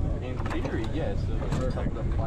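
People talking over a steady low rumble, with a couple of light knocks about half a second and a second and a half in.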